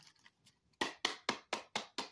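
A deck of oracle cards being shuffled by hand: a run of sharp card slaps, about four a second, starting about a second in.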